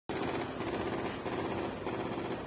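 Automatic gunfire, rapid and continuous, starting abruptly.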